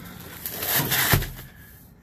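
Rustling and scraping as a vinyl seat cushion is lifted and shifted off a rusted floor pan, rising to a single knock about a second in.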